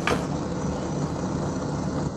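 Steady low rumble of background noise coming through a participant's open microphone on a video call, with a brief click just after it starts.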